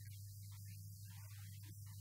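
Steady low electrical mains hum, with faint, choppy speech from a man talking into a handheld microphone above it.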